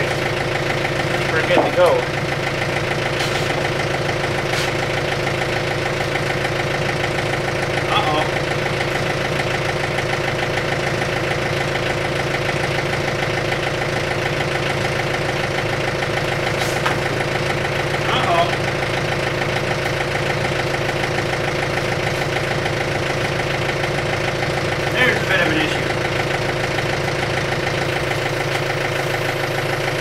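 John Deere 110 backhoe loader's diesel engine idling steadily.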